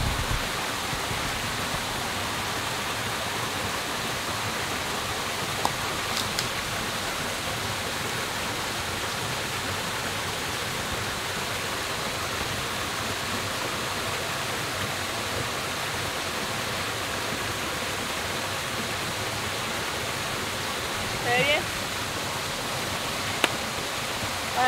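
Small waterfall pouring into a rock pool, a steady rushing hiss throughout, with a single click about a quarter of the way in and a brief voice near the end.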